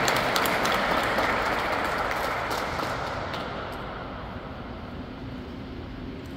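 A congregation applauding in a reverberant church, the clapping thinning out and dying away over the few seconds.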